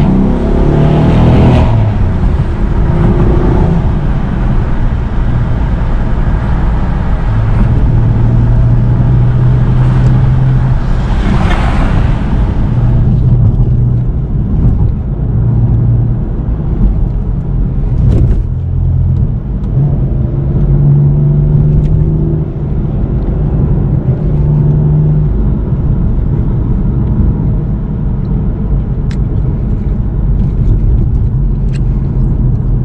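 BMW M4 Competition's twin-turbo inline-six heard from inside the cabin while driving, its engine note rising and falling with the throttle. There is a louder rising burst about 11 seconds in, and after that it settles to a lower, steadier drone.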